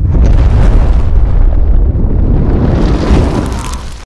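Loud, deep rumbling boom sound effect of an outro sting, with a hiss that grows near the end.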